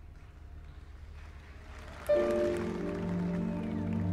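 Orchestra with grand piano: after a quiet opening, a held chord enters suddenly about halfway through and is sustained.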